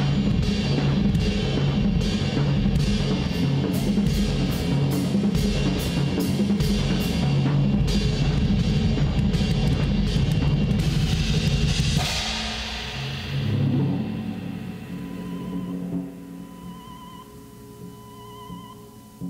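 A large drum kit played fast and hard, dense rolls and strikes across toms, bass drum and cymbals, which stop about two-thirds of the way through on a final hit. A cymbal wash then fades, leaving a soft sustained drone of held tones.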